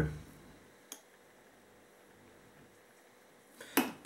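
Quiet room tone broken by two short clicks of fly-tying tools being handled: a faint one about a second in and a sharper, louder one near the end.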